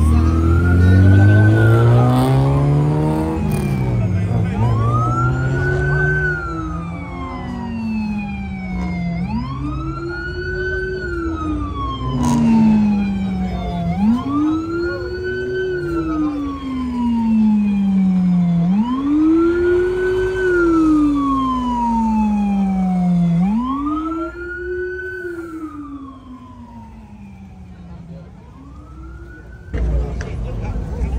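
Police siren wailing, rising and falling in pitch about every five seconds, and fading over the last few seconds. In the first few seconds a car engine revs up hard over it.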